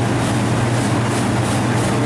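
Steady mechanical noise: a constant low hum under an even hiss, with the high hiss pulsing faintly about four times a second.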